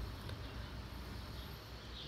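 Quiet outdoor ambience: a faint, steady low hum and hiss, with faint high chirps near the start and no clear event.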